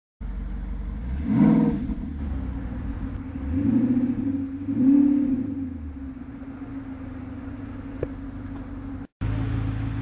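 Audi R8 PPI Razor GTR's V10 engine idling and blipped three times, each rev rising and falling within about a second. The sound cuts out briefly near the end.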